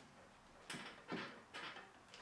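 Three short, faint wood-on-wood scrapes and knocks about half a second apart as a tight-fitting tenon is pressed down into its mortise to seat it flush.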